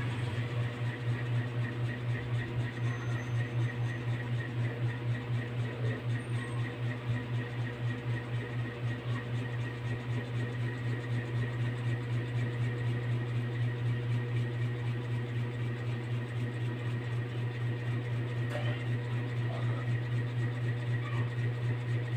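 A steady low hum, unchanging throughout, with a slight flutter.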